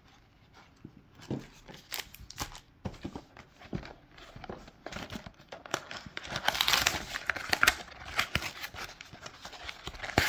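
Wrapped trading-card packs crinkling and cardboard blaster boxes rustling as they are handled, with scattered light taps of packs set down on a table. Quiet for the first second, then irregular rustles and clicks, busiest a little past halfway.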